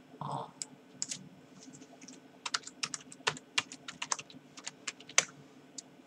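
Typing on a laptop keyboard: an irregular run of quick key clicks, thickest in the middle and latter part, after a brief murmur from the man at the start.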